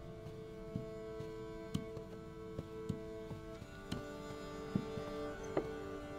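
Soft background score of held sustained notes, with short struck notes every half second or so; the chord shifts a little past halfway.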